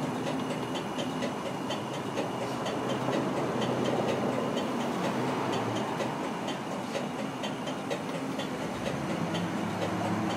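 A steady hissing, machine-like wash of sound with faint, regular clicks and low tones that shift near the end. It is the opening texture of a contemporary piece for piano and percussion.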